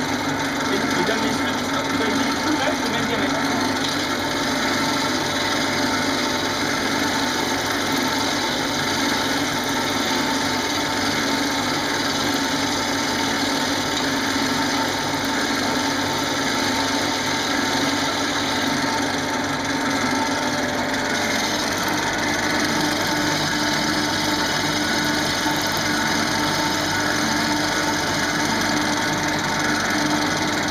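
Wood lathe running steadily while a gouge cuts into a spinning wooden spindle: a continuous shaving, scraping noise over the steady hum of the lathe motor.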